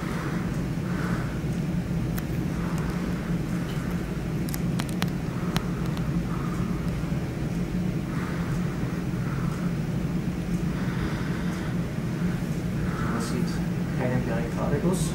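Steady low hum, with faint soft sounds every second or so and a few light clicks about five seconds in.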